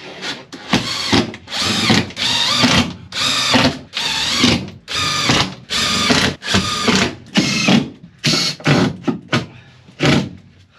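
Cordless drill driving screws through a plywood van floor into the battens beneath. The motor runs in a rapid series of short bursts, about half a second each with brief pauses between them.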